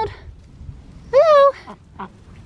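White Pekin duck quacking: one short, loud, nasal quack a little over a second in.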